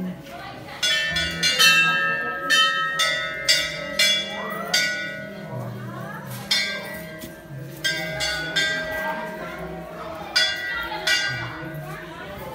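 Hanging temple bells struck again and again, about a dozen clangs at uneven intervals, each ringing on briefly.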